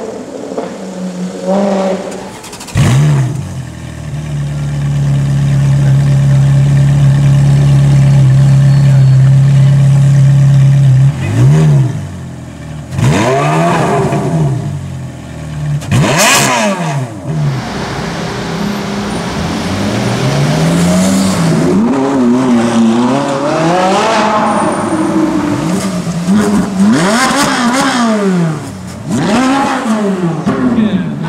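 Supercar engines revving hard: a sharp climb, a steady drone held for several seconds, then a run of rising and falling revs and passes. In the later part the revving comes from a Ferrari 458 Italia's V8, with one sharp loud crack near the middle.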